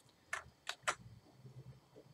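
Three short, sharp clicks from computer controls as an edit is made, the last two close together.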